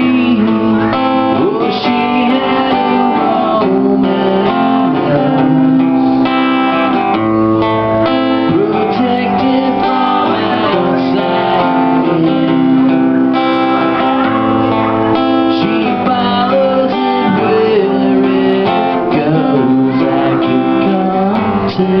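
Live acoustic guitar played steadily through a song, strummed and plucked, with a singing voice over it at times.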